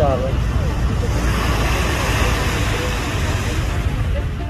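Steady rushing outdoor noise on a phone microphone at the shore, with a few indistinct voice sounds right at the start.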